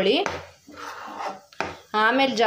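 A metal spoon scraping and stirring thick curry gravy in a non-stick frying pan, in a few short strokes.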